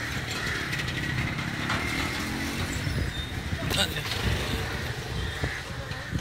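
Street traffic noise with a motorcycle engine running close by and indistinct voices mixed in; a brief sharp knock or click sounds nearly four seconds in.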